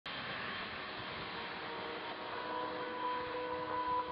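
Airliner jet engines running as the planes taxi, a steady rushing noise. In the second half, soft held music notes fade in over it.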